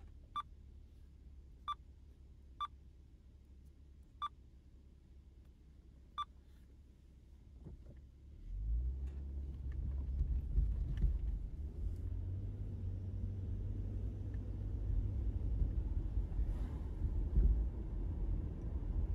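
Low road and engine rumble inside a moving car, which grows much louder about halfway through and stays loud. Five short high beeps sound, unevenly spaced, in the first six seconds.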